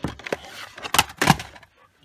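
Plastic DVD cases clacking and knocking against each other as a hand tips them along a shelf: a few sharp knocks, the two loudest about a second in, close together.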